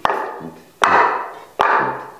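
Wooden Dutch clogs clacking on a hard tiled floor as someone steps in them: three sharp knocks about three-quarters of a second apart, each ringing briefly. The clogs are too big and loose on the feet.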